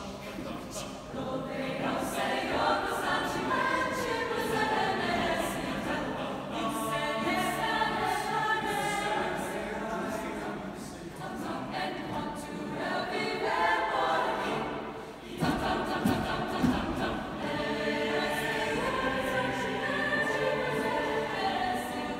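Mixed-voice high school chamber choir singing a cappella under a conductor, in sustained, moving chords. Just past the middle the singing dips briefly, then comes back with a few sharp thumps.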